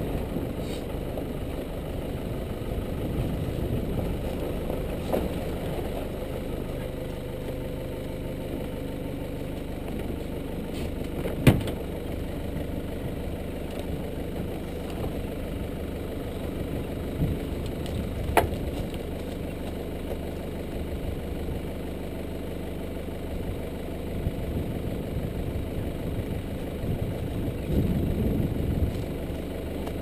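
Nissan Navara D22 4WD's engine running steadily at low revs, close to idle, with two sharp knocks, at about 11 and 18 seconds in.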